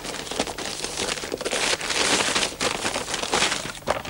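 Wrapping paper being torn and crumpled as a present is unwrapped by hand, an uneven run of crinkling and rustling.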